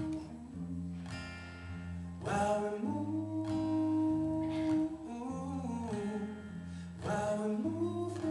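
Acoustic guitar strumming chords over held low notes in a slow song's instrumental break, played live. A short wordless vocal line bends through the middle.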